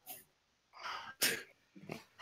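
A person's short, breathy non-speech sounds: a faint breath at the start, then two sharp noisy exhalations about a second in, and a faint one near the end.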